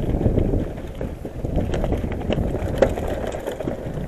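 Mountain bike rolling down a loose gravel and rock trail: tyres crunching over stones, with many small rattles and clicks from the bike and one sharper knock near the end.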